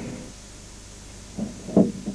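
Low background hiss, then a brief spoken word or two from a person's voice near the end.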